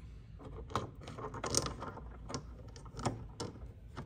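Rough agate nodules clicking and knocking against one another and a plastic tub as they are handled. There are several separate sharp knocks, the loudest about a second and a half in.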